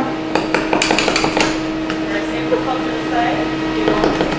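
Metal spatulas chopping and scraping ice cream and mix-ins on a frozen stone slab: a quick run of sharp clacks in the first second and a half, then scattered ones. A steady hum runs underneath.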